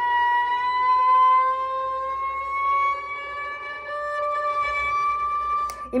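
Violin sounding one long bowed note on the A string as the first finger slides slowly up from B to D, a gradual rising glide in pitch: a slow shift from first to third position. The note stops abruptly near the end.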